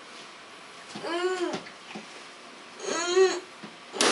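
A toddler's angry whining: two drawn-out cries, each rising and then falling in pitch, about two seconds apart.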